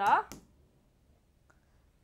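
A woman's speech that ends about half a second in, then quiet room tone with one faint click about one and a half seconds in.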